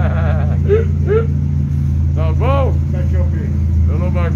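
Turbo buggy's engine idling steadily, with voices over it.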